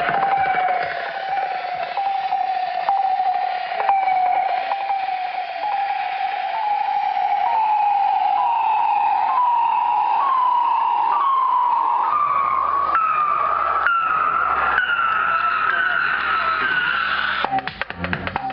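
Club electronic music (minimal techno) in a breakdown and build-up. A repeating falling synth note, about one a second, climbs steadily in pitch with the kick drum gone. A low bass tone enters about two-thirds through, and the drums come back in right at the end.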